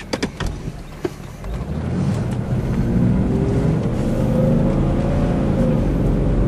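Engine of a 1995 Jeep Cherokee Limited heard from inside the cabin, pulling away and accelerating. A few sharp clicks come in the first second, then the engine grows louder from about a second and a half in, its pitch rising gradually.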